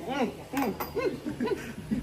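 Young men laughing and chuckling in short bursts, with a few light clicks and knocks from handled objects.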